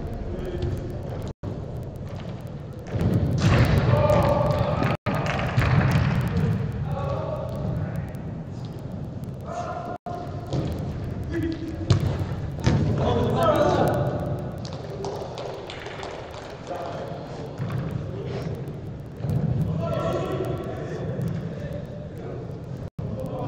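Indoor five-a-side football in a large echoing hall: ball kicks and thuds, one sharp one about halfway through, with players shouting to each other.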